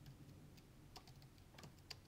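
Faint typing on a computer keyboard: several scattered, light keystrokes.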